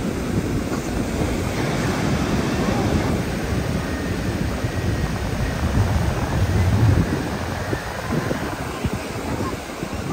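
Ocean surf breaking and washing up a sandy beach, a steady rushing wash, with wind buffeting the microphone in a low rumble.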